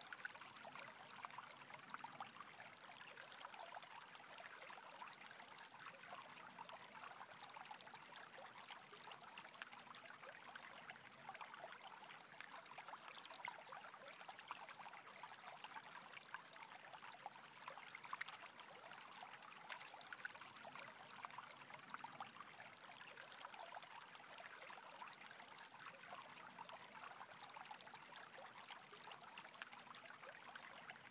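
Near silence: a faint, steady trickle like running water, with no other events.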